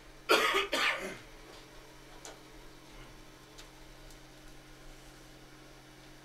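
A man coughs twice, close to the microphone, about half a second in. A low steady electrical hum from the broadcast setup follows, with a couple of faint ticks.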